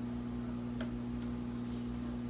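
Steady low electrical hum under a faint even hiss, with one faint tick a little under a second in.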